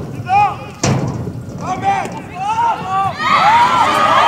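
Football players shouting short calls to each other across the pitch, with a single sharp thump about a second in. From about three seconds in several voices shout at once, louder.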